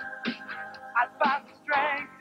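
Pop-rock song with a held synthesizer chord and a drum beat, with short sung vocal phrases from young singers.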